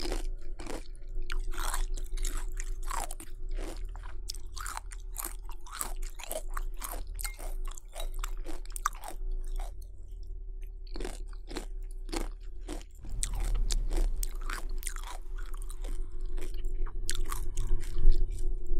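Close-miked crunching and chewing of chocolate flake cereal, many crisp crunches in quick, irregular succession, over a faint steady hum.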